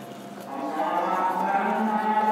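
A long, steady, low voice-like drone held on one note, starting about half a second in after a slight rise in pitch.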